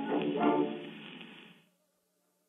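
Instrumental accompaniment of a 1913 Victor acoustic recording playing the song's closing chords, with the narrow, top-less sound of a pre-electric horn recording. Two chord strokes, the second about half a second in, then the music dies away and stops about one and a half seconds in.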